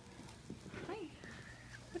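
Five-week-old Vizsla puppies moving about, heard as faint light clicks and scuffles under a softly spoken "Hi".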